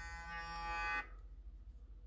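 Clarisonic sonic facial brush with a foundation brush head, its motor humming steadily against the skin, then cutting off suddenly about a second in: the one-minute timer it seems to be preset to has run out.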